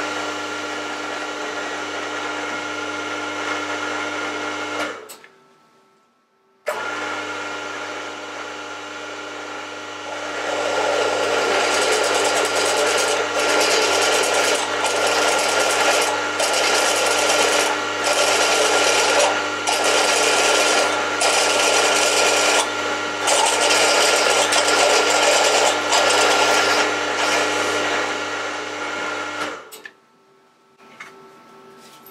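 Milling machine spindle running with a steady motor hum; it stops about five seconds in and starts again a moment later. From about ten seconds in, a twist drill cutting into a metal plate adds a loud grinding sound that breaks off and resumes repeatedly as the drill is fed in and eased back.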